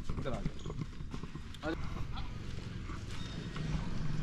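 Brief, indistinct voices over a low steady rumble, with scattered light clicks.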